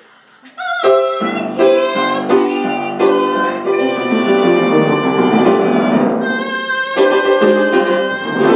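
A woman singing a comic musical-theatre Christmas song with upright piano accompaniment. Piano and voice come back in together about a second in, after a brief hush, and carry on steadily.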